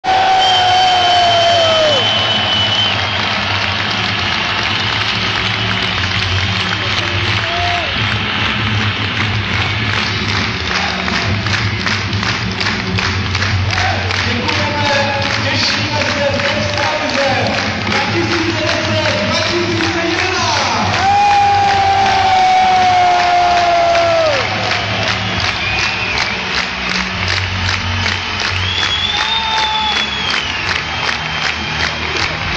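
Ice hockey fans in an arena crowd cheering and chanting, with long drawn-out chants and, from about ten seconds in, a steady clapped or drummed beat about twice a second.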